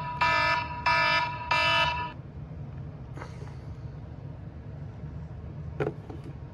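iPhone alarm ringing: a repeating electronic tone in pulses of about half a second, which is the phone's wake-up alarm going off. It is cut off about two seconds in when the alarm is switched off.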